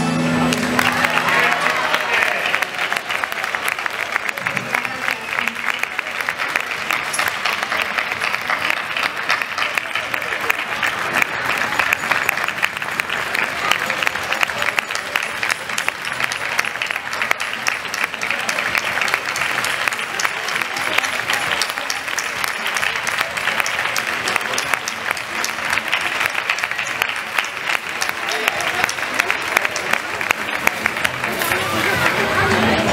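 Audience applauding in a long, steady round of clapping, just as the folk music with tambourine ends at the start.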